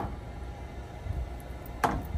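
Wooden spoon slowly stirring thick, cheesy tomato cream sauce in a stainless steel skillet: soft, quiet stirring over a low steady rumble, with one sharp click at the start.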